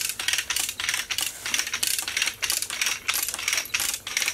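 Manual chain hoist being worked: its ratchet pawl clicks and the chain links clink in a fast, even rhythm of several clicks a second as the hoist takes up the weight of a giant pumpkin.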